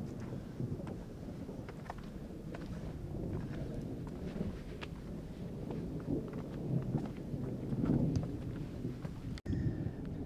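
A steady low rumble with scattered light clicks and rustles: walking along a rocky forest trail with the camera's microphone picking up wind and handling noise.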